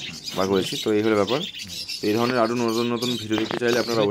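A man's voice talking, with small cage birds chirping in the background.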